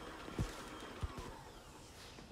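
Electric stand mixer whisking cake batter with a low motor hum, with two dull low thumps about half a second and a second in. The hum falls away in the second half as the mixer winds down.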